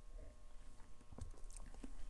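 Faint mouth sounds of a man sipping beer from a glass and swallowing, with a few small wet clicks in the second half.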